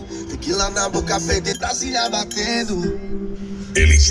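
Rap music with vocals playing loud through a Corsa's custom car audio system: a door panel of 6x9 speakers and two subwoofers. Near the end the bass suddenly comes in much louder.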